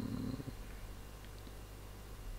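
A brief low rumbling noise over the call audio in the first half-second, fading into a steady low electrical hum.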